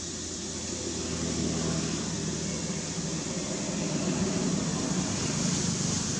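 Steady low mechanical rumble over a hiss, swelling from about a second in.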